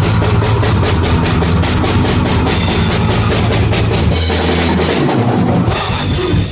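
Live rock band playing loud, led by a drum kit beating fast and steady over heavy low bass and guitar. About four seconds in, the drumming drops away under a held low note, and the music changes abruptly near the end.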